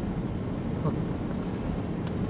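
Steady road noise heard from inside a moving car's cabin: tyres on a wet road and the engine running at cruising speed.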